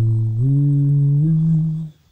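A man humming one long, unbroken note with closed lips, stepping up in pitch twice, once before the middle and again past it, and stopping just before the end.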